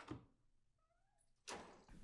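Near silence broken by a hallway door being opened: a faint short squeak about a second in, then a louder clunk of the latch and the door swinging open about a second and a half in. There is also a brief click at the very start.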